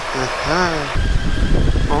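A short drawn-out voice in the first second, then a loud low rumble from about a second in, as the Kawasaki Z900 gets moving: wind buffeting on the bike-mounted microphone mixed with the motorcycle's engine.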